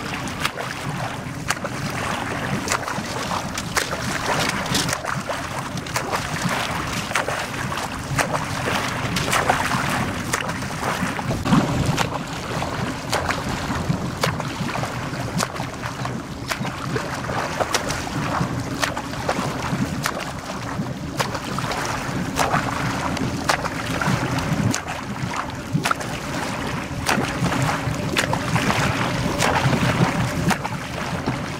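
A motorboat's engine running slowly with a steady low hum as it keeps pace with a swimmer. Water splashes from front-crawl strokes close alongside.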